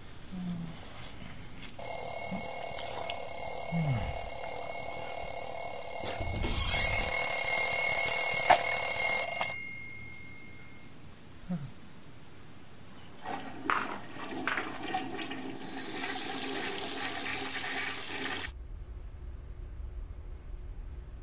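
Mechanical twin-bell alarm clock ringing steadily, louder from about six seconds in, then stopping abruptly as a hand hits it. A few seconds later, rushing water runs for about five seconds and cuts off suddenly.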